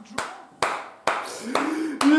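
A man clapping his hands, three separate claps a little under half a second apart, followed near the end by a drawn-out vocal sound from the same man.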